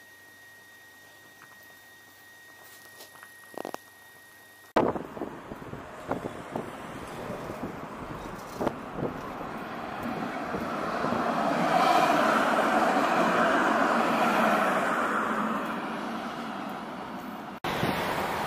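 Faint room tone for the first few seconds, then road traffic beside a city bridge: a steady wash of passing cars that swells as one vehicle goes by close and loud in the second half, then eases off.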